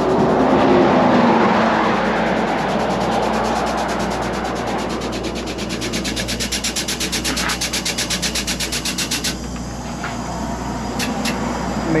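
A vehicle passes on the highway, then a pneumatic tool used on the semi-trailer's wheel runs in rapid, even pulses, about ten a second, for around five seconds and cuts off suddenly, followed by a couple of short sharp hisses or clicks.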